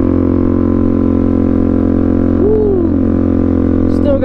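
Suzuki DR-Z400SM supermoto's single-cylinder four-stroke engine running at a steady cruise, a loud even drone. Around two and a half seconds in, a short sliding tone rises and then falls over it.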